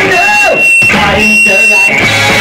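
Live punk rock band in a break in the song: the full band drops out, leaving a single voice and a high steady whine that sounds twice, each time for under a second, before the band comes back in at the very end.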